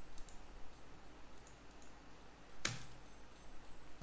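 A few faint clicks, then one sharp click nearly three seconds in, from working a computer's mouse and keys while editing the timeline, over a faint steady hum.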